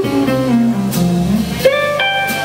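Live jazz trio playing: archtop electric guitar, upright double bass and drum kit. The guitar line steps downward over walking bass notes with light cymbal work, and a higher guitar chord comes in near the end.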